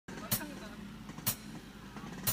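Faint background murmur of voices, with two short sharp clicks about a second apart.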